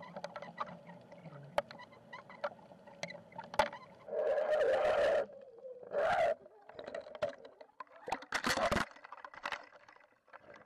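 Muffled water sound picked up by a submerged underwater camera: scattered faint clicks and knocks, with three louder rushing swells of water about four, six and eight and a half seconds in.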